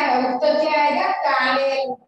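Young children's voices chanting together in a drawn-out, sing-song recitation, in phrases with short breaks between them.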